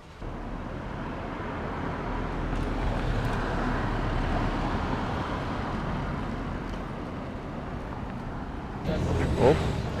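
Street traffic noise: a motor vehicle passing, swelling to its loudest a few seconds in and then fading, with a low rumble underneath.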